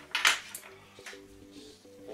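A short, loud rustling burst of handling noise a quarter-second in, then a few faint light clicks, over quiet background music.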